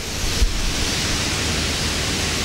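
Steady hiss of background noise with no speech, and a faint click about half a second in.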